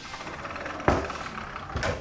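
Door sound effect: a steady rushing noise with a sharp knock about a second in and a weaker one near the end.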